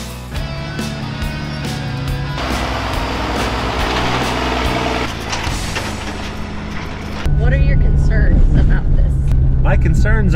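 Background music for about the first seven seconds, then a sudden cut to the inside of a moving vehicle's cab: a steady, loud engine and road drone with voices over it.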